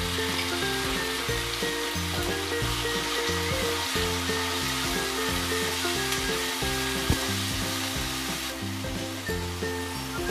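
Poppy-seed and spice paste frying with onions in hot oil in a kadhai, sizzling steadily while it is stirred with a slotted steel spoon, with one sharp click about seven seconds in. A light background melody plays throughout.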